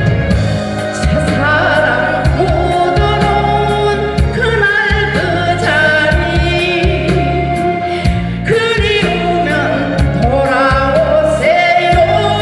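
A woman singing a Korean trot song live into a microphone, her held notes wavering with vibrato, over an amplified backing track with bass and a steady beat.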